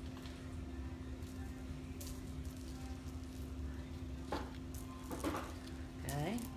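Quiet room noise: a steady low hum with a few faint clicks and handling sounds, and brief faint voice-like sounds near the end.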